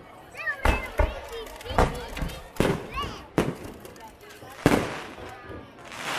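Aerial fireworks shells bursting overhead: about six sharp booms at uneven intervals, the loudest near the end.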